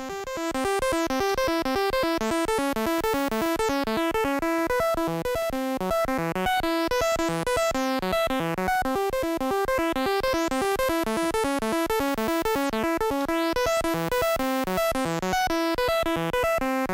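Groovesizer mk1 DIY step sequencer driving its 8-bit granular synth (Auduino engine), playing a fast looping note pattern. Its tone sweeps brighter and duller several times over the pattern.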